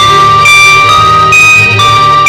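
Orchestra playing an instrumental passage: a melody of held notes that steps to a new pitch every half second or so, over a steady low accompaniment.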